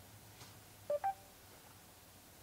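Two short electronic beeps from the Mercedes-Benz A-Class's MBUX voice assistant, about a second in, the second one higher than the first.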